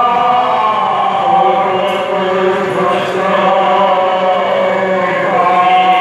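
Devotional group chanting in long held notes that shift slowly in pitch, with a steady drone underneath.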